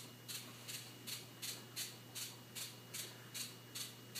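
Liquid Ass fart spray being pumped from its spray bottle in quick repeated spritzes, about two or three short hisses a second.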